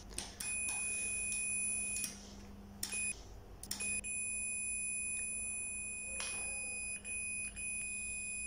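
Fluke 179 multimeter's continuity beeper giving a steady high beep as the test probes bridge a closed contact pair on a DPST micro-switch, the sign of near-zero resistance through the closed contacts. The beep cuts out for about a second and a half after roughly two seconds and drops briefly a couple more times where the probe contact breaks.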